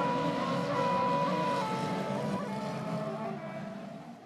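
Speedway race engines running on the dirt track, a steady mechanical noise that fades toward the end, with held background music notes over it.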